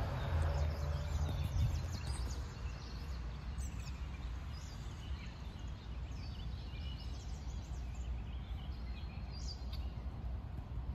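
Outdoor ambience: a steady low rumble with faint, scattered bird chirps.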